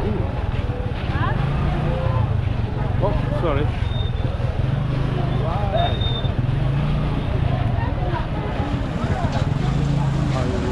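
Busy street crowd: many voices talking and calling at once around a steady low engine hum from motor traffic close by, which eases off and comes back a few times. Two short high whistle-like tones sound around the middle.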